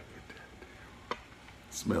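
A quiet pause with faint room tone and a single short click about a second in, then a man's voice near the end.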